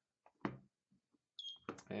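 A digital clamp meter being set up for a capacitance reading. A short click comes about half a second in as the rotary dial is turned, then a single short high beep from the meter about one and a half seconds in.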